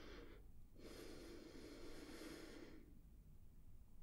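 A person breathing deeply close to the microphone: a short breath at the start, then a long, soft breath lasting about two seconds.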